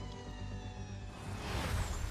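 Onboard sound of an Andretti Gen3 Formula E car: the electric powertrain's whine, several thin tones falling slowly in pitch as the car slows, over road rumble. In the last second a rising whoosh of a broadcast replay transition builds.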